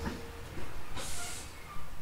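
Tobu 800 series electric train standing at a station: a steady low hum, cut by a short sharp burst of compressed-air hiss about a second in.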